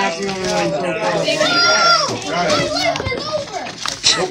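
Several voices talking over one another, children's among them, with one high held call about one and a half seconds in. None of it is clear enough to make out as words.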